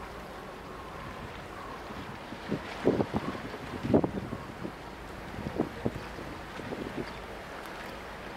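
Wind rushing steadily over the microphone on a ship's deck, with a cluster of dull, irregular thumps between about two and a half and seven seconds in, the loudest about four seconds in.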